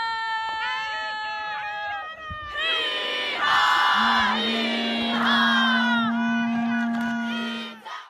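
A single high voice holds long sung notes, then a large group of students joins in with loud chanting and shouts in unison, one low note held steady under them through the second half. It all cuts off just before the end.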